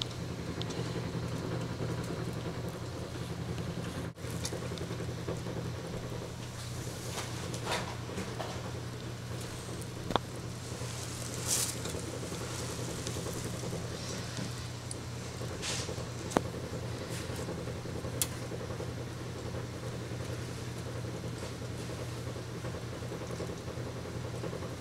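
A steady low hum, with a few faint short clicks scattered through it.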